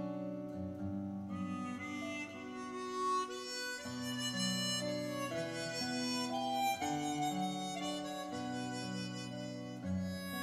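A music recording played through a home-built three-way transmission-line (TQWT) speaker system with FOSTEX drivers. A reedy melody is carried on held chords that change every second or so.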